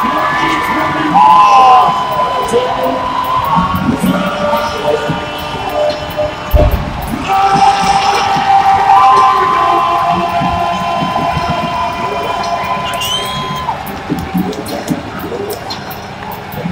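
Stadium crowd cheering over music from the public-address system, with long held notes. A single low thump about six and a half seconds in.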